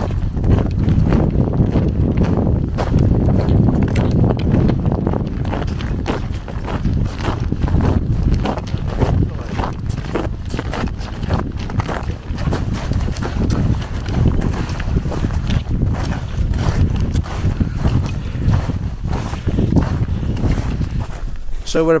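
Strong wind buffeting the microphone with a continuous low rumble, over a run of footsteps crunching on frozen snow.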